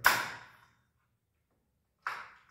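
A sharp knock from a hand tool striking the wooden board fixed against the concrete wall, ringing out briefly for about half a second; a second knock starts right at the end.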